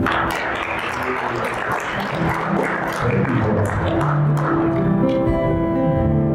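Instrumental music on acoustic guitar. For about the first four seconds the sound turns dense and noisy, then steady held notes come back.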